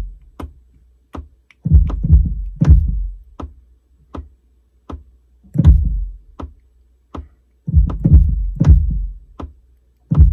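Electronic kick drum from a software drum kit, played in from a keyboard as a 'heartbeat' pattern: a cluster of deep kick hits repeating each bar, about every three seconds. A thin metronome click ticks steadily underneath at 80 beats a minute.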